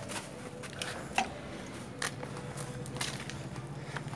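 Footsteps and phone-handling knocks while walking outdoors: scattered, irregular light clicks over a faint steady low hum.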